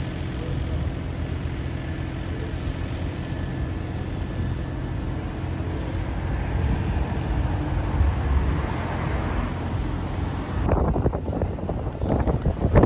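City street traffic: a steady rumble of passing vehicles. About a second before the end it cuts to a different, choppier street sound.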